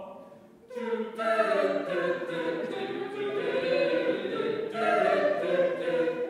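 A small mixed a cappella vocal group singing in harmony. A held chord fades out just after the start, and the voices come back in together a little under a second in and sing on.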